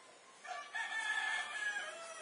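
A rooster crowing once, a single call of about a second and a half that starts about half a second in.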